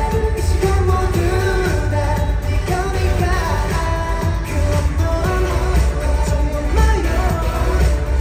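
A K-pop song over a large venue's sound system: singing over a heavy, steady bass beat.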